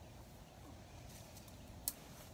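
Faint steady background noise with one short sharp click near the end.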